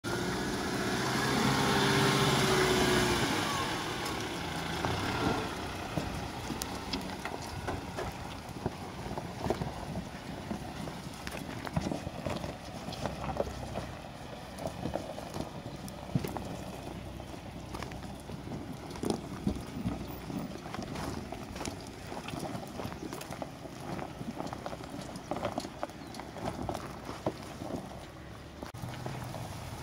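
Toyota Land Cruiser running at low speed down a loose gravel slope, its engine note louder for the first three or four seconds and then low and steady, with many irregular crunches and knocks of stones under the tyres and feet.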